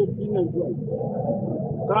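A man's voice speaking with long, drawn-out syllables that glide in pitch, in a dull-sounding recording.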